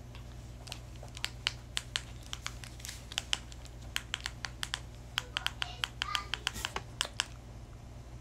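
Plastic buttons of a handheld TV remote control being pressed over and over, a fast, irregular run of sharp little clicks lasting several seconds, over a faint steady low hum.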